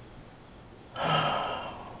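A single breathy sigh from a person, about a second in and lasting about half a second, with low room tone around it.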